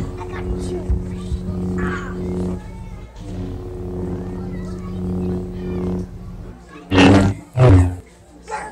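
Lightsaber hum: a steady, even electronic drone that stops briefly about two and a half seconds in and resumes, then two loud sudden bursts near the end.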